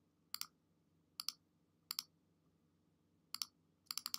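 Computer mouse clicking about five times, each click a close pair of ticks from the button going down and coming back up, spread out with pauses between.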